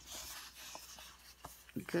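Sticker-sheet paper rustling and rubbing as it is handled and shifted between the hands, a soft hiss mostly in the first second with a few light ticks.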